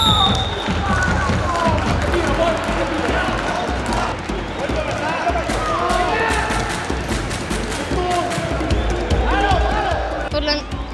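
Indoor youth football game in a sports hall: the ball is kicked and thuds on the hall floor, and children shout, all echoing. A referee's whistle blast ends right at the start.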